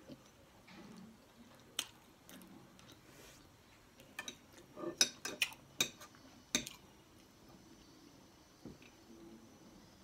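Metal fork clinking and scraping against a dinner plate, a few scattered clicks, then a quick cluster of sharp clinks about five to seven seconds in.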